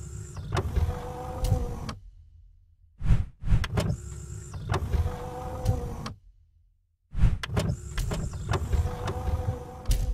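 A mechanical motor-and-slide sound effect, a steady hum with a few clicks, played three times in a row, each about three seconds long with short silent gaps between.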